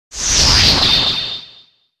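Whoosh sound effect: a sudden rush of noise with a low rumble underneath that sinks in pitch and fades out after about a second and a half, ending on a faint high ring.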